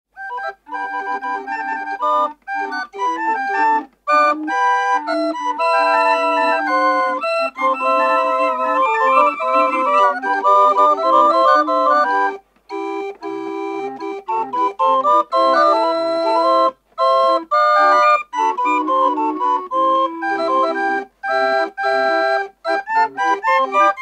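Calliope barrel organ playing a quick melody of short notes, with brief breaks between phrases and a soft low pulse under parts of the second half.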